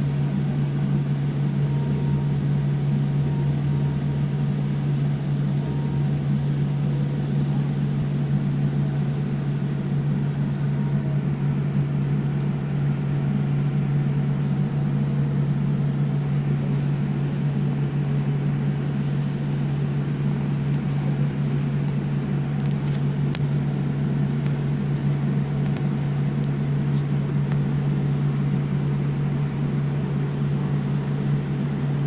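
Jet airliner cabin noise heard from a window seat: the engines and rushing air give a steady low drone with a hiss over it, holding one level throughout.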